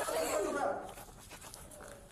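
A man's voice crying out through a body camera's microphone during a struggle on the floor, strained and wordless, for the first half-second or so, then dropping much quieter.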